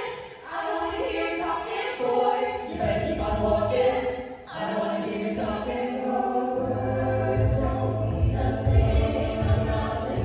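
Mixed-voice a cappella group singing a pop arrangement in close harmony, with no instruments. The singing drops off briefly twice, and a low vocal bass line comes in strongly about two-thirds of the way through.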